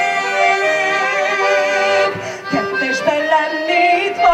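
A woman singing a chanson into a microphone over instrumental accompaniment, holding a long note with vibrato, then a short pause about two and a half seconds in before the next phrase begins.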